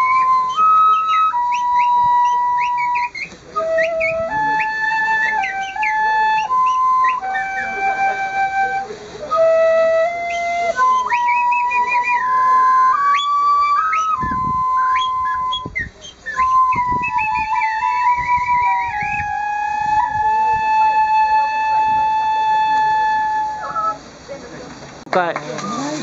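Shinobue, a Japanese bamboo transverse flute, playing a slow solo melody in clear stepped notes, many of them opened with quick ornamental flicks. The phrase ends on a long held note that fades out near the end.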